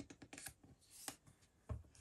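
Faint crinkling and light tapping of clear plastic packaging and a paper panel being handled and pressed by fingers, a run of small irregular clicks with a soft bump near the end.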